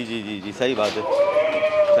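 A goat bleating: one long, steady call starting about halfway through.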